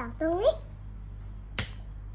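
A child's short rising "aah" sound, then a second later one sharp tap of an orange plastic toy hammer striking a plastic chisel set into a plaster dig-kit egg.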